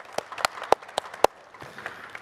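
Sparse hand-clapping applause: a few distinct claps about three or four a second that die away after little more than a second, leaving faint room hiss.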